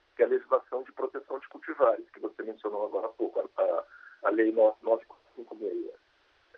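A man speaking Portuguese over a remote video-call link, his voice thin and cut off above about 4 kHz like a telephone line.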